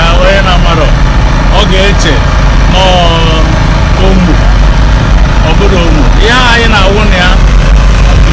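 Several people talking and calling out over a loud, steady low rumble.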